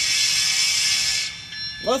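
Horn of an N scale EMD SD40-3 model locomotive's DCC sound decoder, played through its tiny onboard speaker: a thin, hissy horn blast that stops about a second and a half in.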